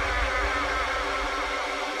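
Buzzing electronic synth drone in a dubstep track, its pitch sagging downward again and again, over a deep sub-bass that fades away.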